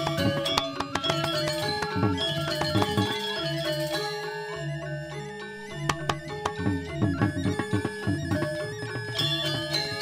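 Balinese gamelan accompanying a Barong Ket dance: bronze metallophones playing fast interlocking patterns over drums and gongs. The music softens briefly in the middle, then swells again.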